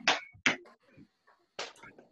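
A few short, scattered sounds from children on a video call, brief voice fragments and thumps of feet as running in place stops, with near quiet between them.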